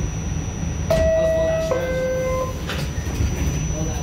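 R46 subway car's two-tone door chime: a click about a second in, then a held higher note stepping down to a lower one, followed by a knock as the doors close. A steady low rumble from the car runs underneath.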